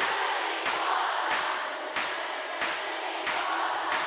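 Large concert crowd clapping along in time, about three claps every two seconds, over a sparse break in the song, with crowd voices underneath.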